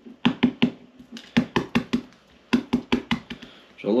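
Hard-boiled chicken eggs tapped against a hard surface to crack their shells: a quick run of sharp taps and knocks, about five or six a second, in short bursts.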